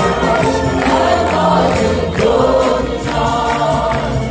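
Live pop song performed by several singers together over an orchestra, with a steady beat.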